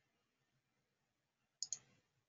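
Near silence, then two quick computer mouse clicks, a tenth of a second apart, near the end.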